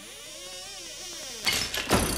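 Title-sequence sound effects: a swelling whoosh with tones that rise and fall, then, about three-quarters in, sudden sharp clicks and mechanical clatter like hand tools ratcheting.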